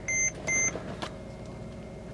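Seatbelt reminder chime of a 2012 Mercedes-Benz GL450, sounding as two short, high beeps about half a second apart in the first second; the warning means a front seatbelt is unfastened. After that only the low hum of the idling engine is heard in the cabin.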